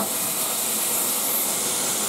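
Steam hissing steadily from a standing LMS Black Five 4-6-0 steam locomotive, a high, even hiss with no exhaust beats.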